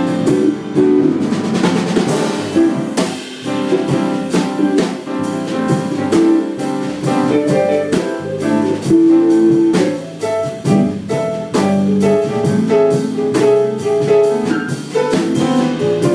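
A small jazz combo playing live, with a drum kit keeping time under sustained pitched instrument notes.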